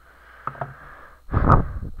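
Plastic toy phone being handled and set down on a table, with faint rustling and light clicks, then a solid knock about one and a half seconds in.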